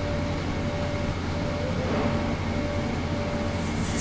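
Ultrasonic cleaning tank with water circulation running: a steady low mechanical hum with a thin steady tone through it. A high-pitched hiss comes in near the end as the water surface churns harder.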